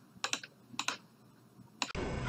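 Faint, scattered clicks of computer keys being pressed: a few single and paired keystrokes with short gaps between them, made while operating the computer's software.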